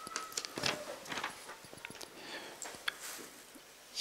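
Low-level room sound with scattered soft rustles and short small clicks and knocks, the noise of people shifting and handling things.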